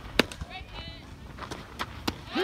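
Short, high-pitched calls from players at a fastpitch softball game, with a sharp crack just after the start and a fainter one near the end.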